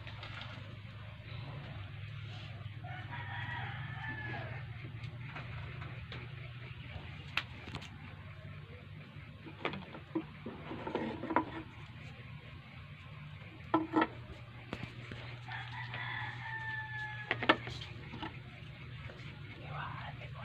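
A rooster crowing twice in the background, a few seconds in and again about three-quarters of the way through, over a steady low hum. Several sharp knocks and handling clicks come between the crows, and the loudest of them are louder than the crows.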